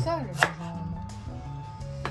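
A chef's knife slicing through fresh ginger and striking a wooden cutting board once, sharply, about half a second in.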